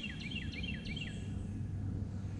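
A songbird calling a quick run of repeated downward-sliding whistled notes, several a second, that stops about a second in, over a steady low outdoor rumble.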